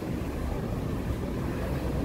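Steady low rumble of harbour-side ambience: wind on the microphone with distant boat engines on the water.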